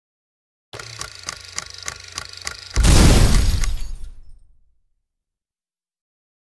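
An edited-in title sound effect: a rhythmic ticking, about four ticks a second over a steady tone, for about two seconds, then a sudden loud crash that dies away over about two seconds.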